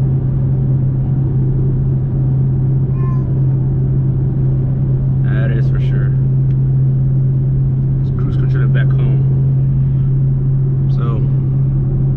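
Chevrolet Camaro with long-tube headers cruising at a steady speed, heard from inside the cabin: a steady low exhaust drone with no revving, over road and tyre rumble.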